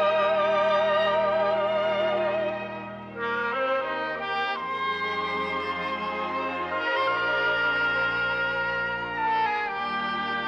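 1930s orchestral film-song recording: a high held sung note with wide vibrato fades out about three seconds in. The orchestra then carries on with brass playing sustained chords that change every couple of seconds.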